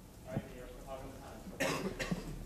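A single sharp cough about one and a half seconds in, over a faint murmur of voices.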